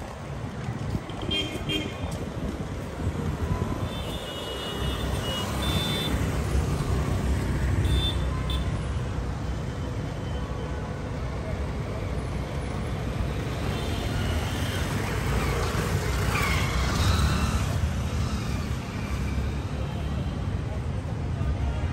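Busy street ambience: a steady rumble of traffic and people's voices, with short high-pitched vehicle horn beeps several times.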